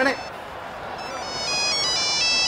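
A phone's electronic ringtone playing a tune of short, high notes, louder from about a second in.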